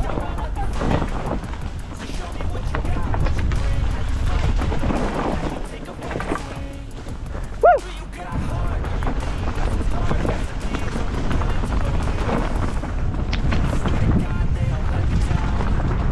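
Mountain bike descending a rough, rocky trail: wind rushing over the helmet camera's microphone with the rattle and rumble of the bike over stones. A brief shout from a rider comes about halfway through.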